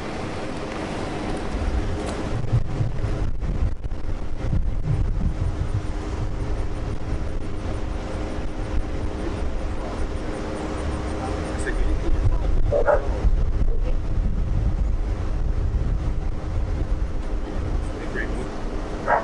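Outdoor ambience of a low, uneven rumble and a faint steady hum, with a single short dog bark about thirteen seconds in.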